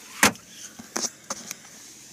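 The glove box lid of a 2013 Nissan Murano snapping shut with one sharp latch click about a quarter second in, followed by a few softer knocks and clicks.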